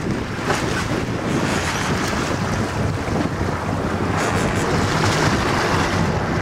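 Steady wind noise on the microphone over a boat's engine and water washing along the hull at sea.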